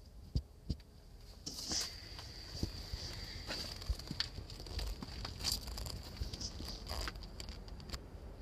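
Handling noise from a hand-held phone camera being moved around: scattered soft knocks, thumps and rustles over a low rumble, with a faint steady high-pitched tone throughout.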